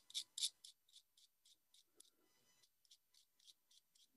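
Soft pastel stick being scraped with a knife blade: faint, rapid rasping strokes, about three or four a second, sprinkling pastel dust onto wet watercolour paper.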